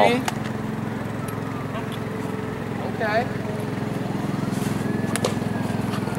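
A motor or engine running steadily in the background, with a single sharp knock about five seconds in.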